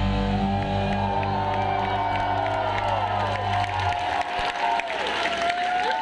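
A live rock band's final chord ringing out, with the bass cutting off about four seconds in, while the crowd cheers and whistles.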